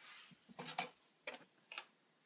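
A few faint, irregular light clicks and knocks of handling noise as the camera and small plastic dollhouse items are moved about.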